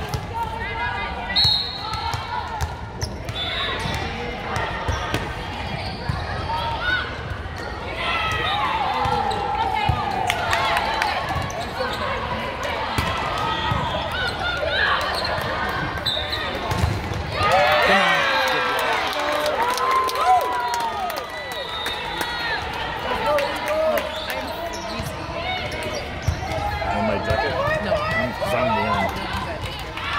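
Indoor volleyball play: the ball is struck again and again in serves, passes and hits, sharp smacks scattered through. Behind them, players and spectators call out.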